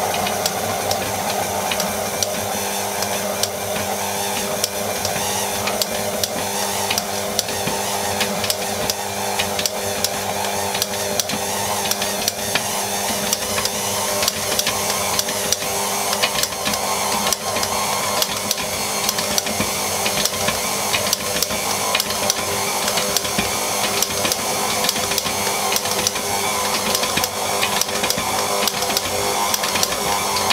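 KitchenAid Artisan stand mixer running steadily, its motor hum carrying a fast, even ticking as the beater turns a soft dough in a glass bowl. This is the butter stage: softened butter is being worked into the dough a few small pieces at a time while the mixer runs.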